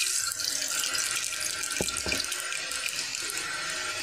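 Hot cooking oil sizzling steadily in a pressure cooker pot, with fine crackling and a couple of sharper clicks about two seconds in.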